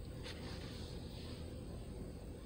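Quiet room tone: a steady low hum under a faint hiss, with one faint soft tick shortly after the start.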